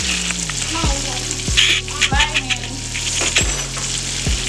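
Hamburger patties sizzling in hot oil in a frying pan, a steady crackling hiss. Underneath runs music with a deep bass line and regular low beats.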